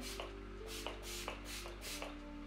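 Pump setting-spray bottle misting the face, several short hissing pumps about half a second apart.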